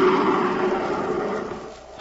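A radio-drama sound effect: a sustained roar with a steady low tone under it, fading out near the end.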